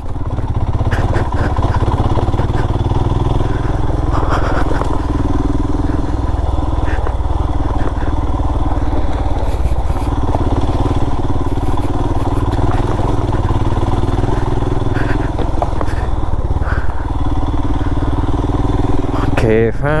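Motorcycle engine running steadily while riding along a rough dirt track, with a constant low rumble and no change in pace.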